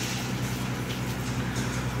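Steady low engine hum over a constant hiss, with no change through the pause.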